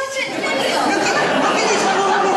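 Several voices talking over one another at once, a jumbled chatter that builds up about a third of a second in.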